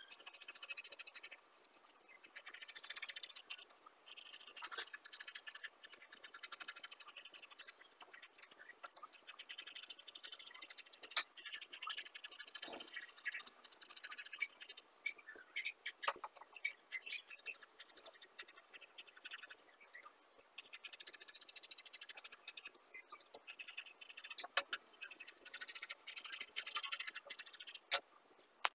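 Scissors cutting through satin fabric: faint, repeated crunching snips of the blades through the cloth, with a few sharper clicks and light rustling of the fabric.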